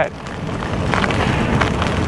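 Wind rushing over a helmet-mounted action camera's microphone while riding an e-bike along a gravel dirt track, building over the first half second and then holding steady.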